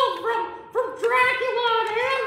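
A high-pitched, squeaky voice talking in short phrases of about half a second each.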